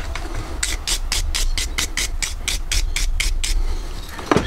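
Rapid, even rasping strokes of a small warding file on metal, about four a second, stopping shortly before the end.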